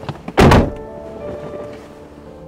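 A car door shutting with one heavy thunk about half a second in, over a film score of held tones.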